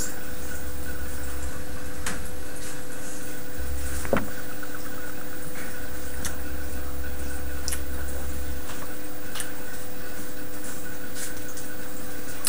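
A man taking a swig of beer from a glass and swallowing, with scattered faint clicks and one light knock about four seconds in, over a steady electrical hum from the recording.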